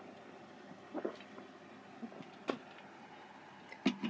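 A person gulping soda while chugging it from an upturned plastic bottle: faint separate swallows about a second and a half apart, with a sharp click near the end as the drinking stops.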